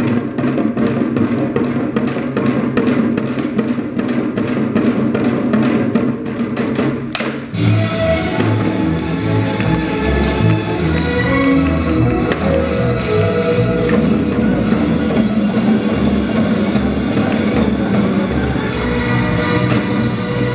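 Korean traditional drum-dance music: janggu hourglass drums beaten in a fast, steady rhythm. About seven and a half seconds in the music changes, bringing in a melody over deep, heavy drumbeats.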